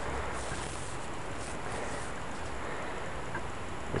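Steady, even outdoor background noise with no distinct events, like a hiss or rush of air.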